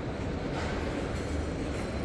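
Steady low rumbling background noise of a large store hall, with no distinct events standing out.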